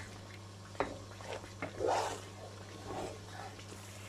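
Wooden spatula stirring thick, ghee-rich suji (semolina) halwa in a pan: a few soft, faint scrapes and squelches over a steady low hum. The halwa is cooked to the stage where the ghee separates out.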